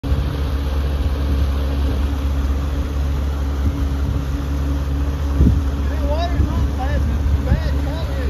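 A vehicle engine idling steadily with a low, even hum. A faint voice comes in over it during the last two seconds.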